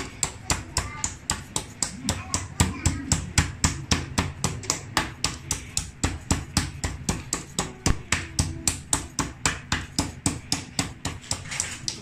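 A meat tenderizer mallet pounding a whole raw chicken on a plastic cutting board, in steady strikes of about four a second, to tenderize the breast.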